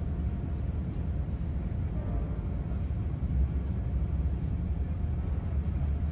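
Steady low rumble of a Boeing 787-8 taxiing, heard from inside the cabin: the engines at low taxi thrust and the airframe rolling on the taxiway.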